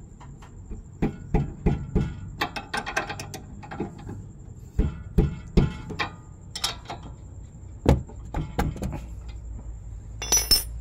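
Irregular metallic clicks and clinks of a 14 mm combination wrench working the nut of a front stabilizer link on a Honda Mobilio, about a dozen sharp strokes as the wrench is turned and repositioned. The nut is being tightened on a worn stabilizer link that knocks over rough roads.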